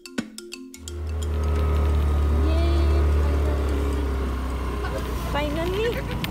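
Background music of plucked notes stops about a second in, giving way to a steady low rumble of wind and road noise on the microphone of a moving scooter.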